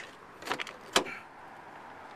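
Car door being opened on a 2007 Lexus RX 350: a light click of the handle about half a second in, then a sharp latch click about a second in.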